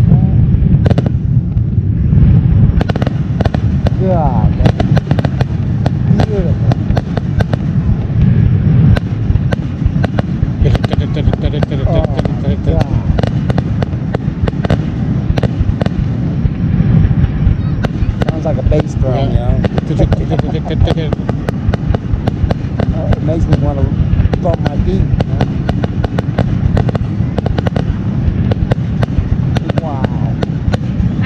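Aerial fireworks display: shells bursting in a continuous run of bangs and crackles, with people's voices in the background now and then.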